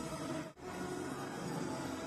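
Low, steady background ambience of the ground under the broadcast, with a brief dropout about half a second in.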